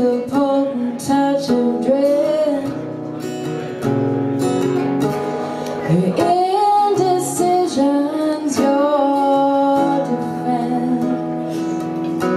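A woman singing with her own strummed acoustic guitar, holding some notes over steady strumming.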